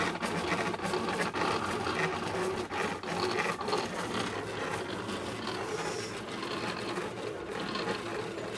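Graphtec-made Silhouette Cameo cutting plotter at work, cutting a mask out of vinyl: the knife carriage runs across and the rollers feed the sheet, a steady busy motor whirr full of small rapid clicks.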